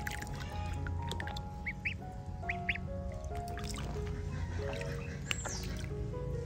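Background music with a stepped melody of held notes. Ducklings give a few short, high peeps over it, about two seconds in.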